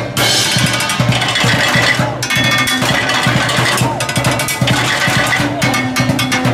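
Drummers beating galvanized metal trash cans, plastic buckets and metal pails with drumsticks, playing a fast, steady percussion rhythm with metallic clangs over deeper drum-like thuds.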